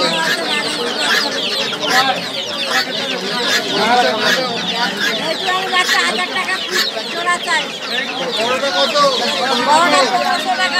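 Many caged chickens clucking and calling over one another without a break, mixed with many quick high peeps from young chicks.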